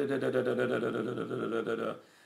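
A man's voice holding one long, steady hesitation sound, a drawn-out "uhh", for nearly two seconds while he looks for a Bible passage. It stops just before the end.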